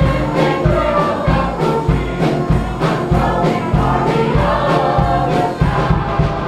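Church choir singing a gospel song over instrumental backing with a steady, heavy bass beat.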